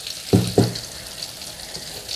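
Steady sizzle of food frying in hot oil, with two short low hums from a voice about half a second in.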